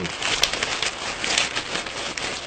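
Plastic package wrapping crinkling and crackling as it is handled and pulled open by hand, with irregular sharp crackles.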